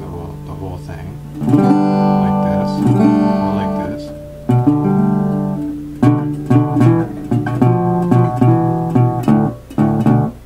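Resonator guitar in open D tuning, fingerpicked with a thumb pick and a slide: a chord rings for a couple of seconds, then from about six seconds a steady run of picked notes in a shuffle, with a constant bass note under the licks.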